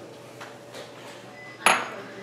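Balsamic vinegar trickling faintly from a small glass bowl into wine in a stainless steel skillet, then a single sharp clink of the glass bowl with a brief high ring about one and a half seconds in.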